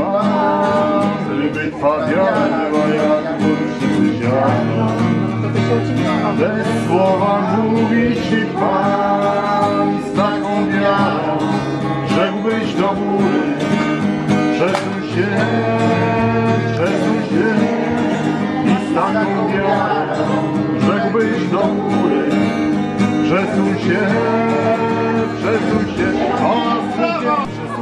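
A song sung to a strummed acoustic guitar in a steady rhythm.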